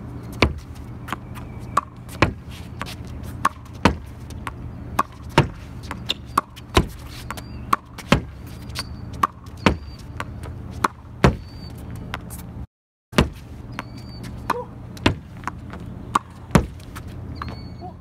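Tennis balls struck with a racket on an outdoor hard court: a sharp pop about every second and a half, with quieter ball bounces between them. Under it runs a steady low traffic hum, and the sound drops out briefly once, about thirteen seconds in.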